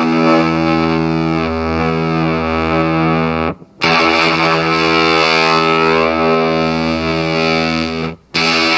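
Electric guitar through a Rosewater fuzz pedal: a thick, fuzzed chord held for about three and a half seconds, cut off, then struck and held again. Its upper overtones shift slowly as a knob on the pedal is turned.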